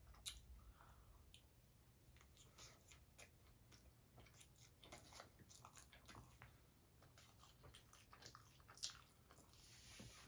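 Faint close-up chewing of a soft burrito: scattered small wet mouth clicks and crackles, with one sharper click near the end.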